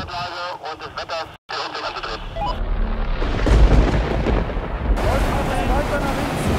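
A voice speaks briefly, then after a short break strong wind buffets the microphone from about two seconds in: a loud, deep, rough rumble.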